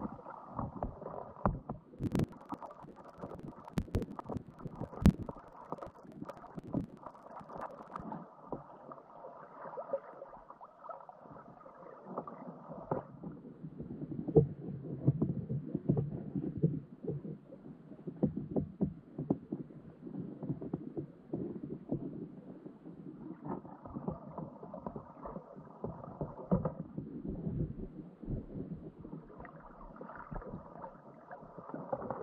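Muffled underwater sound picked up by a GoPro in its waterproof housing inside a wire crab trap: a low churning of moving water, with scattered sharp clicks and knocks, a few strong ones in the first five seconds, as blue crabs clamber over the trap and bait around the camera.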